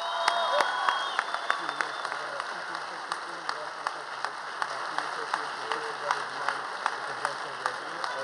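Large audience giving a standing ovation: dense sustained applause with voices in the crowd, easing off slightly toward the end.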